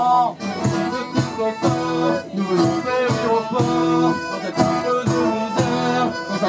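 Acoustic folk band playing an instrumental passage: accordion and acoustic guitars over a steady percussive beat.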